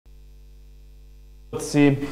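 Steady, faint electrical mains hum for about a second and a half, then a man's voice starts speaking near the end.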